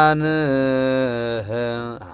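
Ethiopian Orthodox liturgical chant (zema) sung by a man's voice, holding long drawn-out notes that bend slowly in pitch, dipping and moving to a new note about one and a half seconds in.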